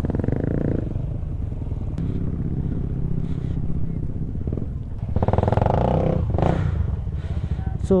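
Motorcycle engine running at low speed as the bike rolls slowly, with a steady low rumble. It gets louder for a second or so about five seconds in.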